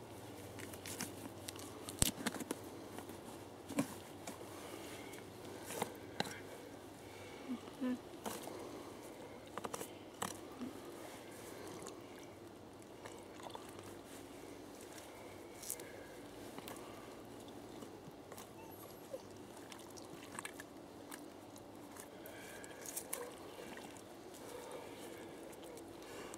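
Knife and hands working inside a roe deer carcass during field dressing (gralloching): irregular wet crunches and clicks of cutting and pulling, over a faint outdoor background.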